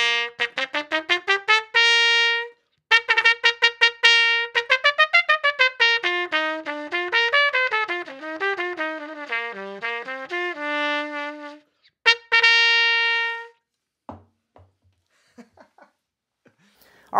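Trumpet played with a Humes & Berg stone-lined straight mute: a quick rising run of short notes ending on a held note, then a long stretch of fast notes winding up and down, and after a short break one more held note. The straight mute filters out some of the lower tones, giving a bright, slightly shrill tone.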